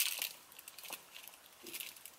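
A snack wrapper crinkling in short bursts, around the start and again near the end, as a snack is bitten into and chewed.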